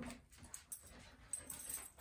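Faint sounds of a five-month-old goldendoodle puppy fidgeting and jumping up, small clicks and rustles scattered through.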